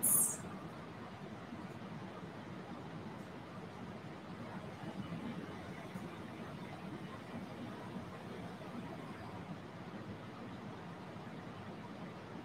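Faint, slow ujjayi breathing: a soft breath drawn through a narrowed throat. It heard as a low, steady hiss that rises slightly around the middle.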